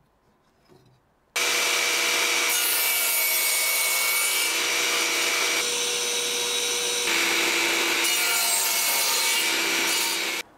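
Table saw cutting 45-degree mitres in strips of oak. The saw starts abruptly about a second in and runs loudly, with a steady whine whose pitch shifts several times from one cut to the next.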